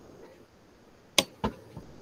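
Two sharp clicks about a quarter of a second apart, over faint background noise.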